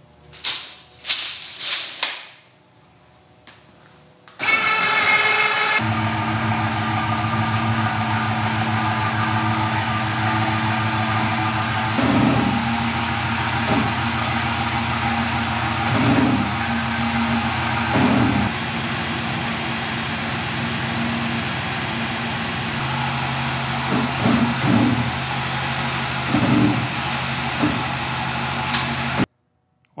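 A few thumps, then the Ford F-350 pickup's engine running steadily at low speed while it is backed under a truck camper, with a few brief rises in engine speed and a small step up in pitch about two-thirds of the way in.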